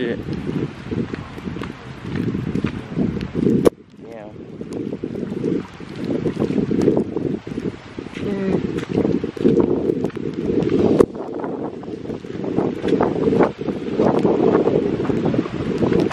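Wind buffeting the microphone over heavy rain, gusting unevenly. Muffled voices come through now and then, and there is one sharp knock about four seconds in.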